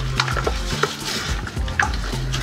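Toilet brush scrubbing inside a porcelain toilet bowl partly full of water, a few short scraping strokes, over background music with a steady low bass line.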